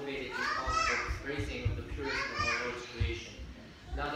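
Speech: a man's voice reading aloud, joined twice by a child's higher voice, about half a second in and again at two seconds.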